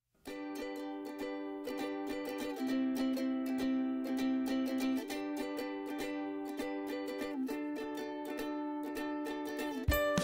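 Background music on plucked strings, a quick steady strum with the chord changing every two to three seconds. It starts just after a brief cut to silence.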